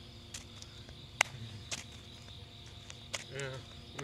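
Night-time outdoor ambience: a steady high-pitched drone of insects, broken by a few sharp clicks, the loudest a little over a second in, with a brief laugh and "yeah" near the end.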